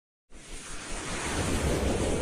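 Whoosh sound effect for an animated logo intro. A swell of rushing noise with a low rumble beneath rises out of silence just after the start and grows steadily louder.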